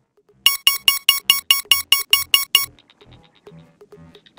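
Synthesized electronic beeps from a cartoon robot powering up: a rapid, even run of about eleven identical bright beeps, about five a second, starting about half a second in. These give way near the middle to much softer electronic blips.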